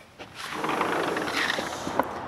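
Sliding glass patio door unlatched and slid open on its track, a rolling, scraping rush lasting about a second and a half, ending in a short knock.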